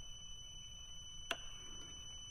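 One sharp click of the left handlebar switch button, about a second in, confirming the service-interval reset. Under it is a faint, steady, high-pitched electronic tone.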